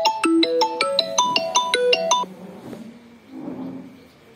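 A mobile phone ringtone playing a quick melody of short, bell-like pitched notes, about five a second, which cuts off abruptly a little over two seconds in.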